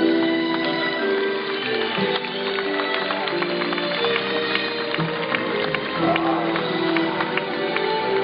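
A live band playing an instrumental passage of a slow song, with held chords that change every second or so.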